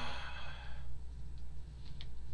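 A man's long breathy sigh, fading out about a second in, over a steady low hum.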